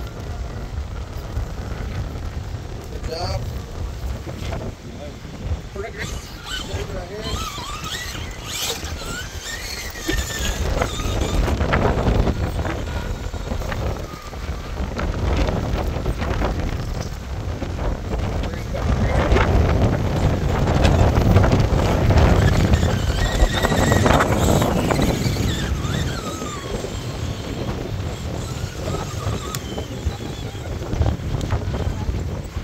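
Strong wind buffeting the microphone in uneven gusts, loudest about two-thirds of the way through, with faint, indistinct voices of people standing nearby.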